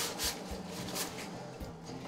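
Dry corn muffin mix pouring from a cardboard box into a mixing bowl, a soft rustle, under quiet background music.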